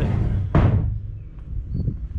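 A single heavy thump about half a second in, ringing briefly and fading into a low rumble.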